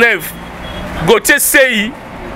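A man speaking in short phrases, with a pause of about a second in between. A low steady rumble sits underneath, heard in the pause.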